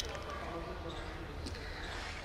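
A pause between spoken lines: steady low background rumble and faint hiss from the open microphone, with a small knock right at the start.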